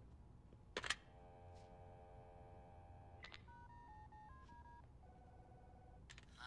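A telephone handset is picked up with a click, and a steady dial tone sounds for about two seconds. Then a quick run of touch-tone key beeps dials a number, followed by a steady ringing tone on the line. All of it is faint.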